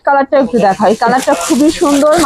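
Speech: a person talking continuously, with no other sound standing out.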